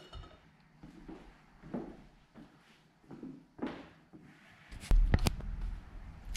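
Camera microphone being handled: faint rustles and soft knocks, then a cluster of sharp clicks about five seconds in over a low rumble.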